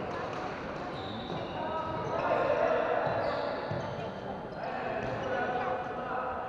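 Floorball game sounds echoing in a large sports hall: players' running feet and shoes squeaking on the court floor, the clack of sticks and ball, and players calling out.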